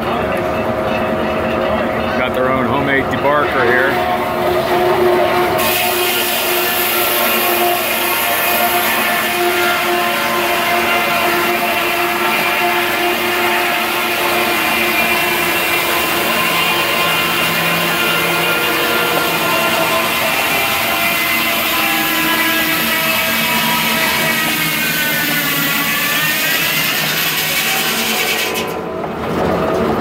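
Large sawmill circle blade cutting through a red oak log as the carriage feeds it, a loud steady ringing whine of several tones over the rasp of the cut. Near the end the pitch dips and comes back up, and the sound briefly drops just before the end.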